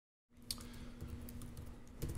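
Faint typing on a laptop keyboard: scattered quick key clicks over a low steady hum, starting after a brief moment of dead silence.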